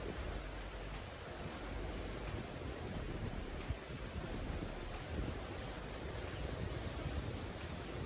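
Steady wind noise buffeting a handheld phone's microphone, a rushing hiss with a heavier low rumble.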